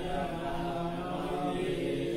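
A Buddhist monk's male voice chanting Pali text in long, held, steady tones.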